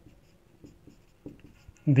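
Marker pen writing on a whiteboard: a run of short, faint strokes as words are written out.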